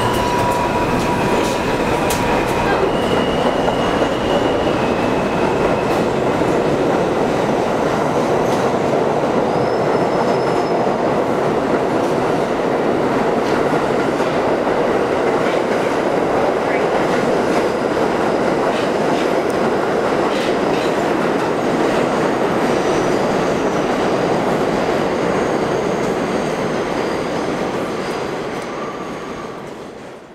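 R32 subway car train pulling out of an underground station and running past at close range: continuous wheel and rail noise with clickety-clack over the rail joints, and a few brief high tones in the first few seconds. The sound fades out at the end.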